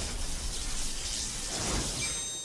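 Sound effect of a channel logo animation: a steady, crackling electric hiss like static or lightning.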